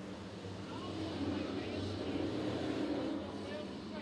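A pack of dirt late model race cars' V8 engines running together, a steady mass of engine noise that swells slightly in the middle.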